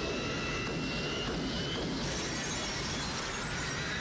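Action-film sound mix: a dense, steady roar of rushing air and jet engine noise with a thin, slowly rising whine, and music underneath.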